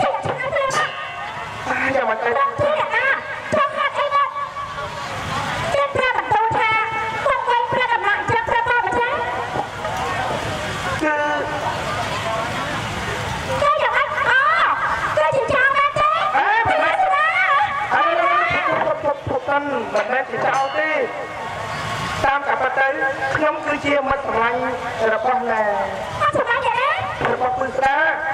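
Lakhon basak (Khmer Bassac opera) singing: performers deliver long, wavering sung phrases of dialogue through stage microphones and a PA.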